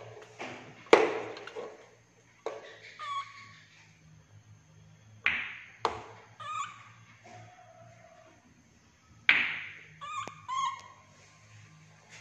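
A handful of sharp knocks and clacks from hard balls and a plastic baby bottle bumping on a plastic chair as a baby monkey handles them, the loudest about a second in. Between the knocks come a few short, high, pitched sounds, likely the baby monkey's calls.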